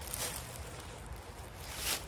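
Rustling and crunching of footsteps through dry fallen leaves and gravel, with a louder rustle just before the end.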